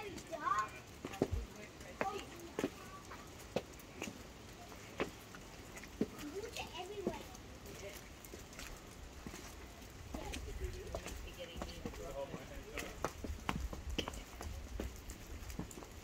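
Water dripping off a wet sandstone overhang and footsteps on a slippery wet flagstone path: scattered sharp taps at uneven intervals, with a low rumble in the second half.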